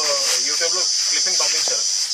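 Steady, high-pitched drone of insects chirring, with a man's voice speaking over it.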